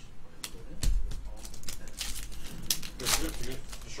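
Trading cards being flipped and shuffled by hand, with the crinkle of a pack wrapper: a quick run of rustles and snaps, and a dull bump about a second in.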